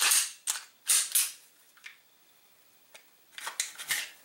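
Sharp clicks and clacks from a Glock pistol and its holster being handled: several quick ones in the first second and a half, a lone click a little later, then a short cluster near the end.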